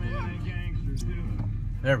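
Steady low rumble of a car's engine and tyres, heard from inside the cab while driving through snow, with a sharp click about a second in.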